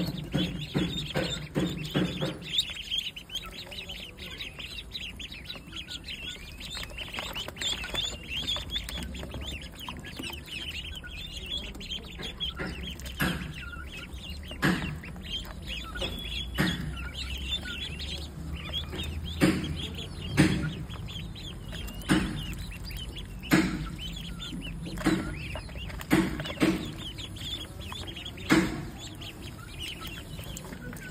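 A flock of ducklings peeping continuously while feeding from a shallow metal tray of soaked grain and water. From about halfway on, louder dabbling strikes come every second or two.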